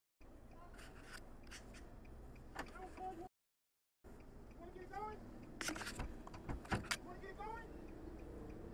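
A car's exterior door handle yanked and clicking sharply several times from outside, heard from inside the cabin, with a man's muffled shouting through the closed window.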